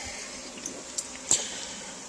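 Steady hiss of water moving in a running aquarium, with two short clicks about a second in.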